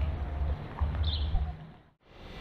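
Outdoor ambience with wind rumbling unevenly on the microphone and one brief high chirp about a second in, fading out to silence at the end.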